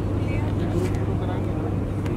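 Faint chatter of people in the background over a steady low hum.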